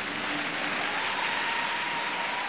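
Arena audience applauding steadily, the clapping merged into an even wash. A faint steady high tone runs through the second half.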